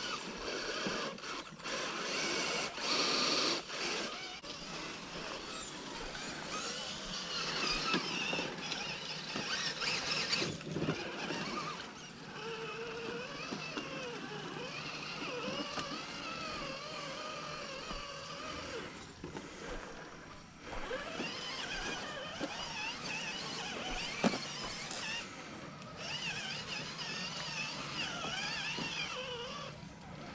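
Electric motors and geared drivetrains of two RC rock crawlers whining, the pitch rising and falling as the throttle is worked while they crawl through a shallow rocky creek. A single sharp click about three-quarters of the way through.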